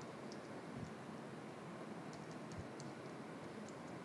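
Faint computer keyboard typing: light key clicks coming irregularly over quiet room tone.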